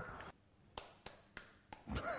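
Eggshell being cracked and pulled apart by hand: four light clicks in about a second.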